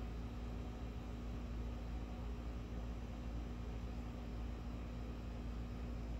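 Steady outdoor background noise: a constant low mechanical hum under a faint hiss, with no distinct events.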